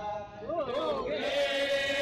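Several voices chanting together in long held notes that waver in pitch, with a brief lull just after the start before the chant picks up again.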